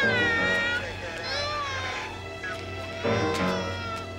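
A baby crying in about three wails that fall in pitch, over background music.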